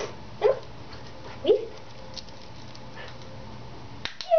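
Two short, high yips from a Shetland sheepdog, about a second apart.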